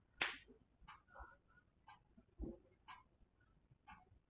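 A single sharp click about a fifth of a second in, then near silence with a few faint small ticks.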